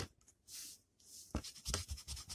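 Yellow colored pencil scratching on paper as it shades. A few separate strokes come first, then quick back-and-forth scribbling strokes in the second half, each with a soft knock.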